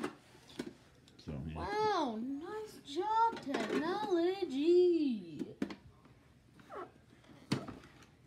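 A child's voice making long, swooping sing-song sounds without clear words, with a few sharp clicks in between.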